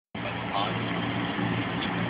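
A vehicle engine idling steadily, with snatches of people talking over it; the sound cuts in suddenly just after the start.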